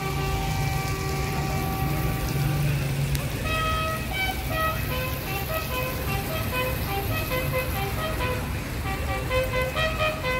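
A brass instrument sounds a slow call of long held notes, one note at a time, stepping between a few pitches. It is played as a salute.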